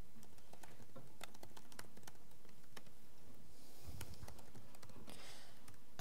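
Typing on a computer keyboard: a run of irregularly spaced keystrokes as a line of code is typed.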